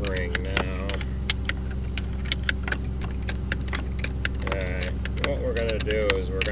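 Adjustable wrench and locking pliers clinking and scraping on a nut at a corn-head gathering chain: a rapid, irregular run of sharp metal clicks. A steady low machine hum runs underneath.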